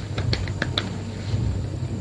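Five or six quick, light clicks in the first second, over a steady low hum.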